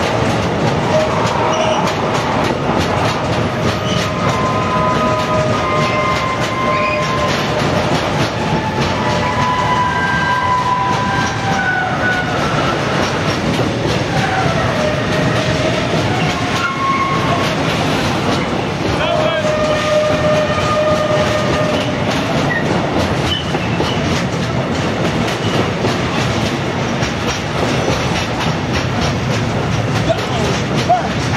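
Intermodal freight train of pocket wagons carrying semi-trailers rolling past, its wheels clattering steadily over the rail joints. Wavering high wheel squeals come and go over the run, most of them in the first two-thirds.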